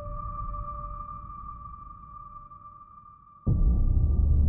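Logo-intro sound design: a sustained ringing tone over a low rumble, slowly fading, then a sudden deep, loud hit near the end that opens into synthesizer music.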